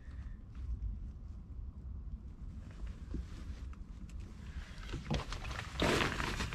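Camera handling noise with a steady low rumble and faint scattered clicks, then louder rustling of fabric and a little water movement near the end as a hand presses bedding at the edge of the floodwater in the trench.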